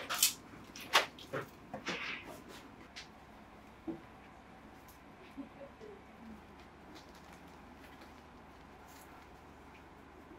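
Stacks of paper flower-pressing sheets being handled: several crisp rustles and taps as the sheets are set down and leafed through in the first few seconds, then only faint, quiet handling.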